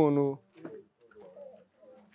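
A man's voice finishing a word, then faint dove cooing in the background.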